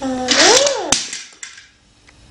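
A toddler's short vocal sound, its pitch sliding up and then back down, followed about a second in by a single sharp click.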